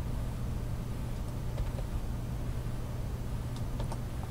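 Steady low electrical hum and hiss from the recording chain, with a few faint short clicks.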